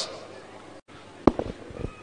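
A single sharp thump a little over a second in, followed by a brief low rumble.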